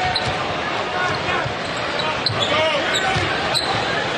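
A basketball being dribbled on a hardwood court, with steady arena crowd noise and a voice heard faintly at times.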